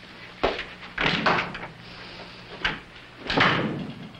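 A door being opened and shut: a sharp knock about half a second in, a few more knocks and rustles, and a louder shutting near the end. A faint low steady hum runs underneath.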